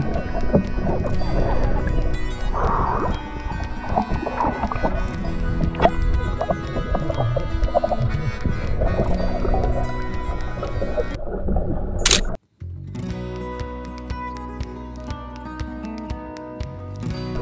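Background music laid over the footage. About twelve seconds in there is a short rising sweep and a sudden break, and a different, steadier piece of music starts.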